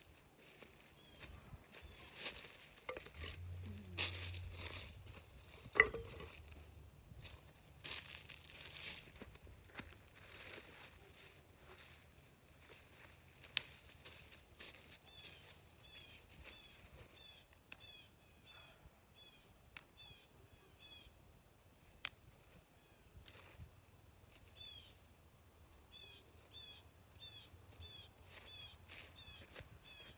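Dry brush and leaves rustling and crackling, with a louder snap about six seconds in. From midway on, a small bird calls in runs of short, quick chirps, two or three a second.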